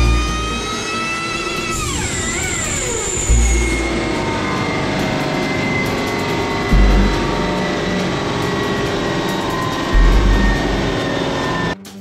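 Car engine run hard on a chassis dynamometer, revving up to near 6,000 rpm, then coming off the throttle about two seconds in, its pitch falling away as the dyno rollers coast down. A low thump recurs about every three seconds.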